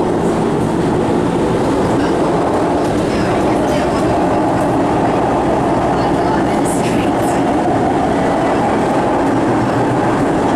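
Steady running rumble of an SMRT North-South Line metro train heard from inside the carriage, the wheels running on the rails, with a faint whine joining for a few seconds in the second half.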